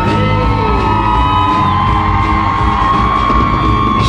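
Rock music from a band, with a long high note held through almost the whole stretch over a steady bass and drum bed, the note dropping away right at the end.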